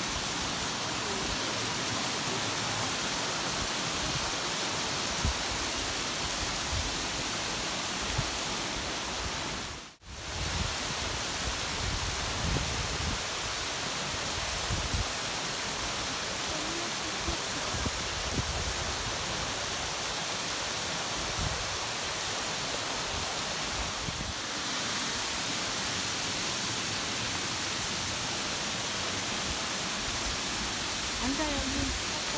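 Steady rush of a shallow mountain stream and small waterfalls cascading over rocks. The sound drops out briefly about a third of the way through.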